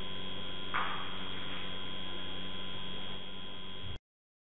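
Steady electrical mains hum with a faint hiss in a low-quality recording, its several steady tones running on with no change. There is a brief soft rush of noise about a second in, and the sound cuts off suddenly at the end.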